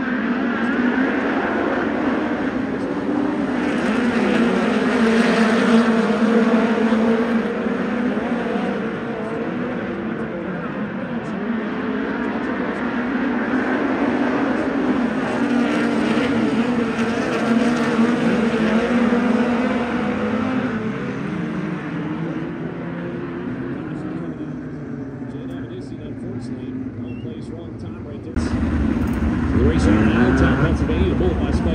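A pack of USAC midget race cars running at pace speed around the dirt oval under caution, their engines droning together. The sound swells twice as the pack passes and cuts abruptly to a louder engine sound near the end.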